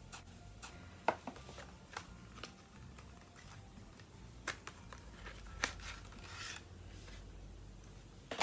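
Paper and card packaging of a phone box being handled: soft rustling and rubbing with a few sharp clicks scattered through.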